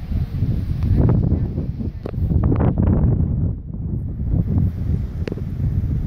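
Wind buffeting the microphone: a loud, gusting low rumble, with a few short sharp knocks in the first half and one more near the end.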